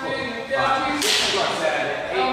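A sharp swoosh about a second in that fades away over the next second, with steady pitched tones underneath.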